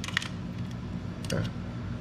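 A few small metallic clicks from a motorcycle saddlebag lid's latch and lock mechanism as it is worked by hand: a couple just after the start and another about a second and a half in.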